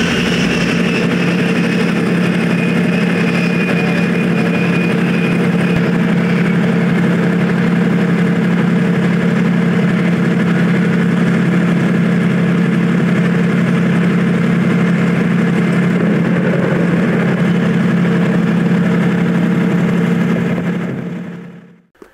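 A vehicle engine running steadily, with a constant low hum, and a high whine that falls in pitch and dies away about six seconds in. The sound fades out at the very end.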